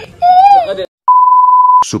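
A child's high, wailing cry that breaks off abruptly, followed about a second in by a steady single-pitch censor bleep lasting under a second.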